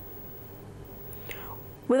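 Quiet room tone with a faint steady hum during a pause in narration; a woman's voice starts speaking near the end.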